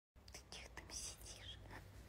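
Faint whispering by a person, a few short breathy syllables.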